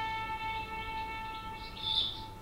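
Solo violin holding one long high bowed note that slowly fades, with a short high chirp near the end.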